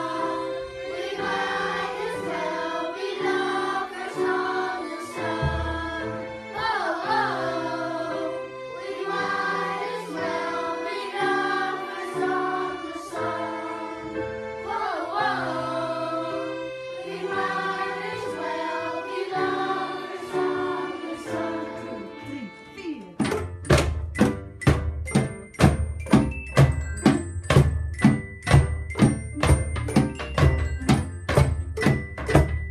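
Children's choir singing a melody with acoustic guitar and violin accompaniment. About 23 seconds in, the singing stops and a loud, steady percussion beat takes over, about two strikes a second.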